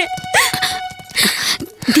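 A woman's wailing cry that rises in pitch, followed by two breathy sobs, over a held note of background music.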